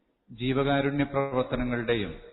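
A man speaking: speech only, starting about a third of a second in after a short silence.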